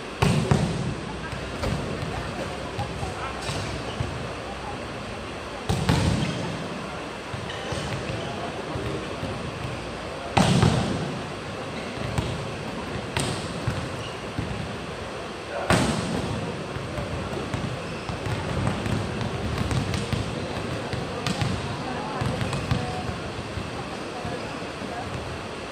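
Volleyballs being spiked in warm-up: four loud, sharp smacks roughly five seconds apart, each with a short boom in the hall, and a few lighter ball hits between them, over steady arena crowd chatter.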